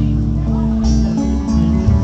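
A small live band playing an instrumental passage on acoustic and electric guitars, slow and sustained, with no singing.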